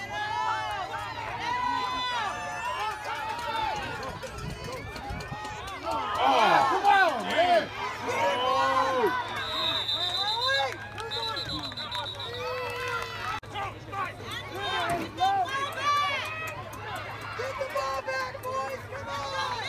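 Many voices of sideline spectators shouting and calling out over one another during a youth football play, loudest about six to seven seconds in. A high steady tone sounds about ten seconds in and again near the end.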